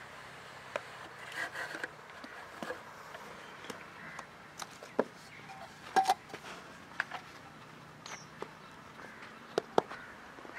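Scattered light knocks and taps, a dozen or so spread irregularly, the loudest two close together about six seconds in, over a faint outdoor background.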